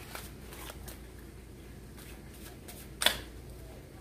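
A deck of tarot cards being shuffled by hand, passed from one hand to the other in a quiet run of soft card flicks, with one sharper snap of the cards about three seconds in.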